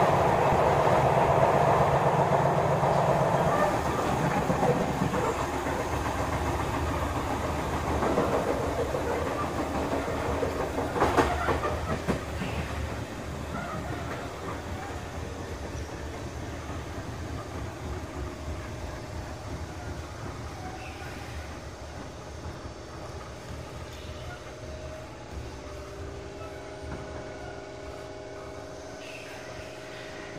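Sotetsu 7000 series electric train heard from inside a car: wheels rumbling and clicking over rail joints, with a sharp clack about eleven seconds in. The sound grows steadily quieter as the train slows, and steady whines from onboard equipment come through near the end.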